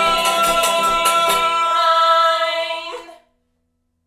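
Closing held note of a folk song sung by two voices over banjo and washboard. The strummed and scraped rhythm stops about one and a half seconds in, and the voices hold the note alone until it ends about three seconds in.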